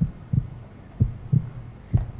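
Heartbeat sound effect played as a suspense cue during a countdown: low double thumps, lub-dub, about once a second.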